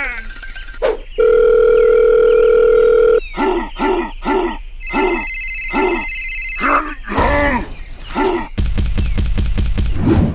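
A string of cartoon sound effects: a steady beep tone held for about two seconds, then a run of short chirpy blips, and a rapid buzzing rattle near the end.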